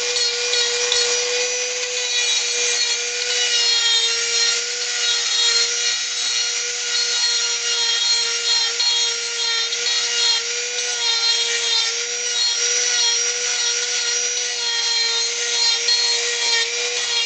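Handheld rotary tool running at steady high speed, its sanding drum grinding against carved wood: a constant motor whine over the scratchy rasp of the bit on the wood.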